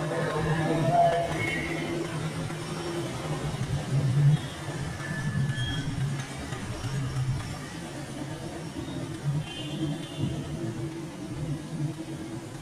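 Road traffic of motorbikes and cars passing by, their engines running and swelling as each goes past.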